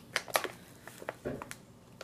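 Clear plastic tea pouch crinkling and rustling as it is handled and opened, with a few short, sharp crackles mostly in the first half-second.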